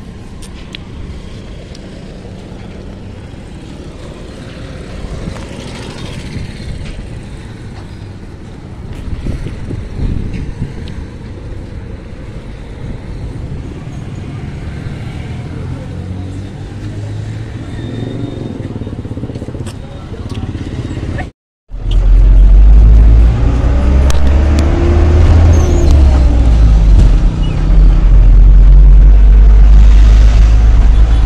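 Street ambience with road traffic for the first two-thirds; then, after a sudden cut, a much louder, deep low rumble of a vehicle in motion heard from inside it.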